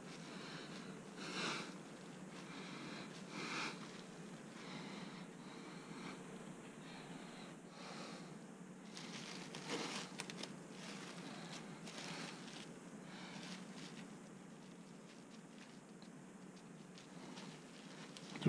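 Faint, intermittent rustling and crinkling as a sushi roll is pressed under a cloth towel and plastic cling wrap is peeled back off it, busiest about halfway through.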